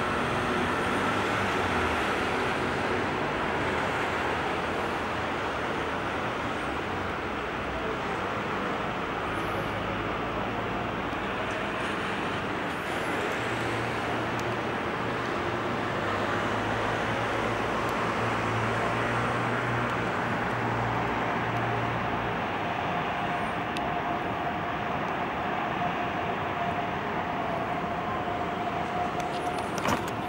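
Steady city traffic noise, an even wash of road traffic, with a low engine hum standing out for several seconds in the middle.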